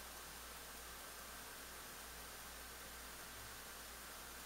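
Faint, steady hiss of room tone with a low hum underneath; no distinct sound event.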